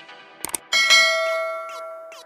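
Subscribe-button animation sound effects: a quick double click about half a second in, then a bright bell chime that rings out and fades over about a second, the notification-bell sound.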